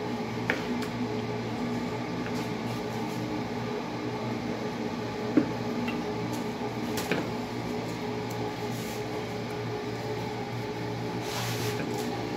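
A steady low hum fills a small kitchen, with a few sharp knocks of a knife on a wooden cutting board as vegetables are sliced; the loudest knock comes about five seconds in, and there is a short rustle near the end.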